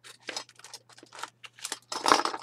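Paper and packaging being handled and rummaged through in a box: irregular short rustles and crinkles.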